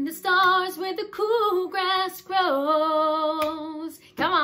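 A woman singing unaccompanied in a few short phrases, ending on a long note held with vibrato for about a second and a half. The guitar is not being played.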